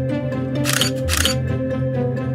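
Background music, with two camera-shutter clicks about half a second apart near the middle: a phone camera taking pictures.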